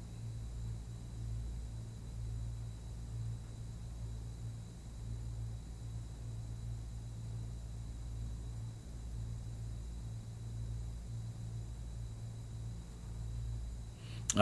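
Steady low electrical hum with faint hiss and a thin high whine: the background room tone of a desk microphone setup.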